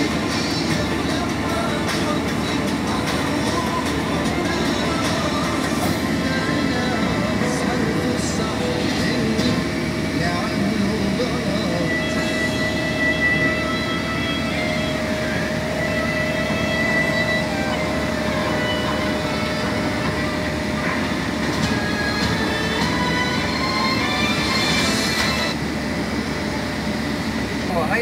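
Steady road and engine rumble heard inside a minibus travelling at motorway speed.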